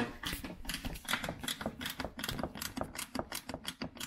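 Ratchet wrench clicking in a quick, fairly even run as a 10 mm socket tightens a bolt.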